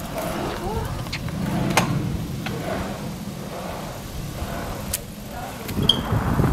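ElliptiGO stand-up elliptical bike rolling over brick paving: a low rumble that swells about a second and a half in and then fades, with a few sharp clicks and faint voices.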